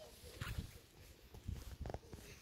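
Faint, irregular footsteps on the wooden boards of a lakeside jetty, a few soft thuds.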